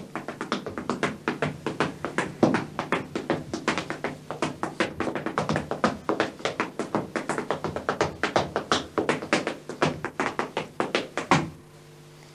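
A traditional Irish hornpipe step danced solo in leather shoes, with no music: rapid, rhythmic taps and stamps of heels and toes on the floor, in strict time. The footwork stops about a second before the end.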